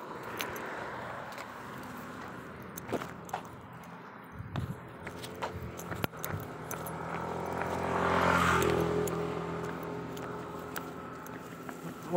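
A motor vehicle passing close by: its engine grows louder to a peak about eight seconds in, then fades away. Scattered light clicks and rustles sound over it.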